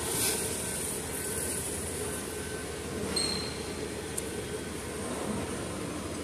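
Shopping cart wheels rolling across a hard store floor, a steady low rumble and rattle over store background noise, with one brief faint high beep about three seconds in.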